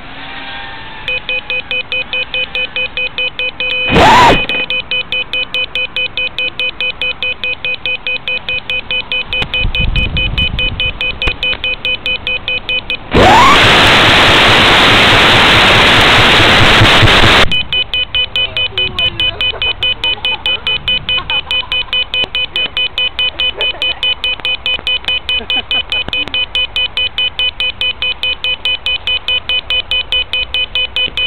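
Rapid, evenly spaced electronic beeping from an FPV quadcopter's buzzer, about two to three beeps a second. Partway through, a loud burst of radio static hiss comes in as the analog video link breaks up, then cuts off and the beeping carries on.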